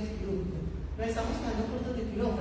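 Speech: a woman talking into a handheld microphone, with a short pause from about a quarter second in to about a second in, over a steady low hum.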